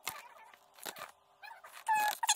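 Paper instruction leaflets rustling faintly as they are handled, with a short high whine near the end.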